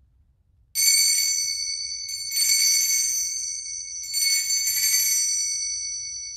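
Altar bells (sanctus bells) shaken three times as the chalice is raised after the consecration, each a bright jangle of several high bells whose ringing dies away slowly.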